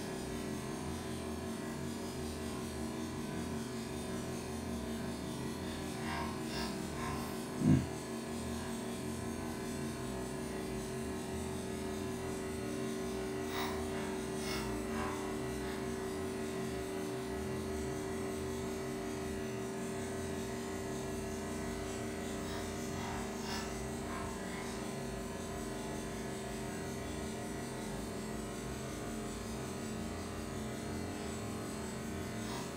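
Wilesco model steam engines running steadily as they wind down, a low, even mechanical drone, with one short loud knock about eight seconds in.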